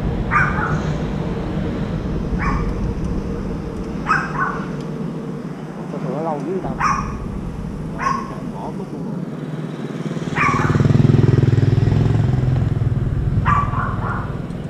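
A dog barking, about seven single barks a second or more apart. A steady engine hum comes up about ten seconds in and fades before the end.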